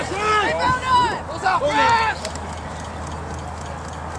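Voices shouting unintelligible calls during a rugby scrum. The shouts stop about two seconds in, leaving only a low steady rumble.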